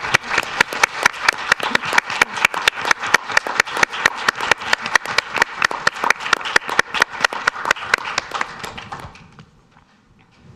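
Applause from a small audience. One person's claps, close to a microphone, stand out sharply at about five a second over the others, and the clapping dies away about nine seconds in.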